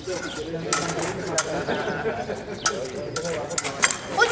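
Rapier blades clicking sharply against each other several times in a fencing exchange, over faint background voices.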